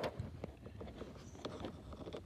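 Faint low background rumble with a few short, soft clicks, the first right at the start.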